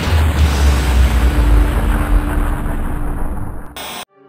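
Title-sequence sound effect: a deep boom at the start that rumbles on and slowly fades under a held tone and a hiss, ending in a short burst and a sudden cut just before the end.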